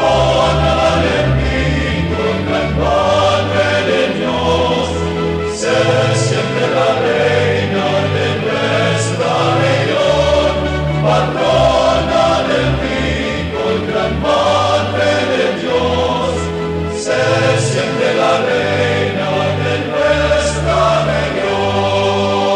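Religious choral music: a choir singing a hymn, sustained and even throughout.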